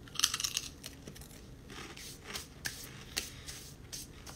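Close handling noise: a short crackling rustle just after the start, then a few scattered sharp clicks, as a hand moves near the phone's microphone.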